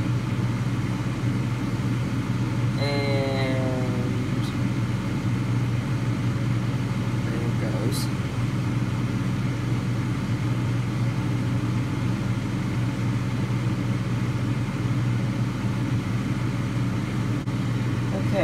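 Steady low drone of a fan running, with a brief rising pitched sound about three seconds in and a faint click about eight seconds in.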